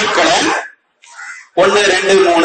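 A man speaking, with a pause of about a second in the middle.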